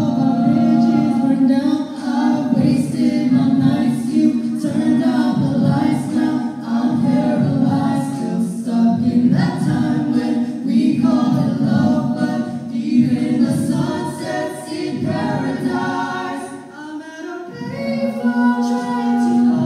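A small mixed-voice a cappella group singing into handheld microphones, layered vocal harmonies over a sung bass line with no instruments. The singing eases off briefly near the end before picking up again.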